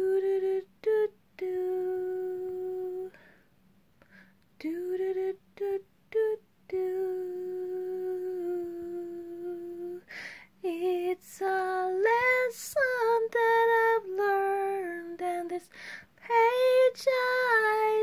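A woman singing unaccompanied, holding long wordless notes with short breaks between them. About two-thirds of the way through, the melody climbs higher and the notes grow louder.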